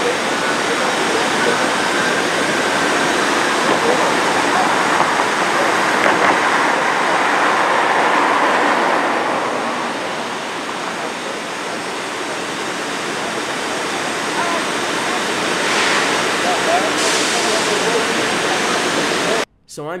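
A loud, steady rushing noise with faint distant voices in it, easing off slightly midway; it cuts off suddenly near the end.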